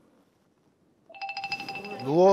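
Near silence for about a second, then a steady electronic tone with a rapid pulsing buzz starts suddenly and holds to the end: an edited-in sound effect.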